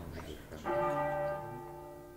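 A large bell struck once, about two-thirds of a second in, its tones ringing on and slowly dying away.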